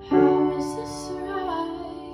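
A teenage girl singing a line of her song over an upright piano chord struck just after the start, the chord ringing on and fading as she sings.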